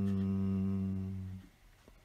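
A low voice holding one long, steady chanted tone, which stops about one and a half seconds in.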